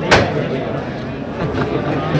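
One sharp knock about a tenth of a second in, the loudest sound, over the murmur of a crowd's voices.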